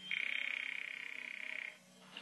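Telephone sound effect in an old radio play: a rapid, buzzing ring on the payphone line, lasting about a second and a half, as the call goes through to the operator.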